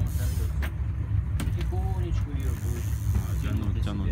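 Fishing boat's engine running with a steady low rumble while under way, with a few light clicks early on.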